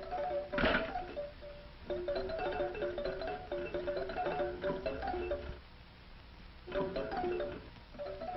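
Tinkly melody of a crank-driven jack-in-the-box music box being played as the toy is tested, breaking off about six seconds in and starting again. A sharp knock about half a second in.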